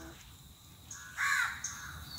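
A crow cawing once, a short call about a second in.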